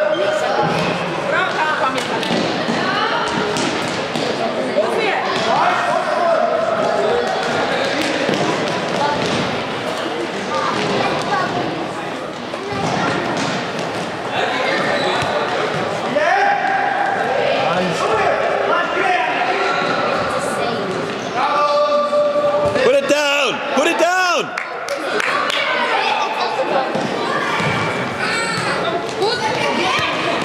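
Echoing din of a youth indoor football game in a sports hall: children shouting and calling, with the ball being kicked and thudding off the floor and side boards.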